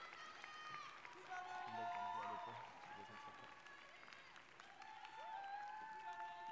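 Scattered clapping from an audience, with voices calling out and cheering over it.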